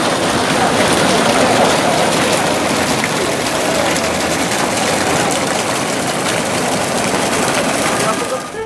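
Fountain water pouring from sculpture spouts and splashing into a shallow stone pool, a loud, steady rush.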